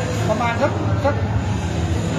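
A man speaking in Thai over a steady low background hum.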